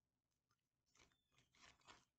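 Near silence: room tone, with a few faint, short rustles or clicks in the second half.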